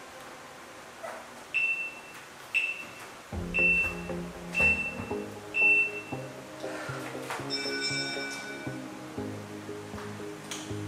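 Workout interval-timer countdown: five short identical beeps, one a second, then a longer chime of several tones about seven and a half seconds in, marking the end of the interval. Background music with low chords comes in about three seconds in.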